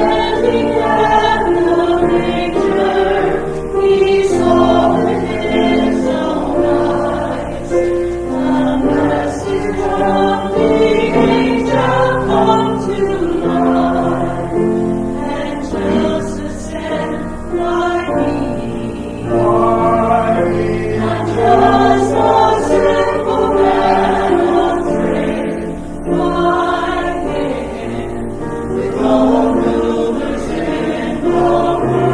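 A small choir of mixed men's and women's voices singing in parts, with sustained notes that change every second or so.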